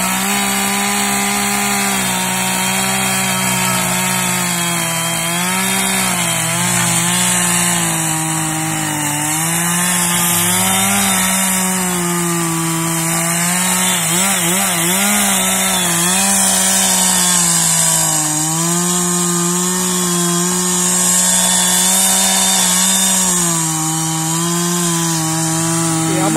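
Two-stroke chainsaw running loud at full throttle, cutting into a resin-rich fatwood stump. Its engine note sags and recovers again and again as the chain bites into the wood, wavering about halfway through.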